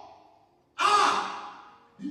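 A man's loud, breathy sigh into a microphone, starting suddenly about a second in and fading away over about a second.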